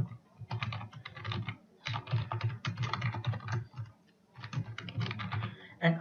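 Computer keyboard typing in quick runs of keystrokes, broken by short pauses, the longest about four seconds in.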